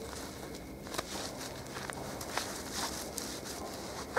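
Faint handling sounds with a few soft clicks: gloved hands screwing the cap onto a plastic bottle packed with snow.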